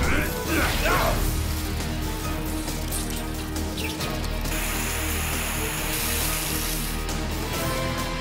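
Cartoon sound effects of robots moving: mechanical whirring and clicking over a low, steady background score, with a hiss from about four and a half to six seconds in.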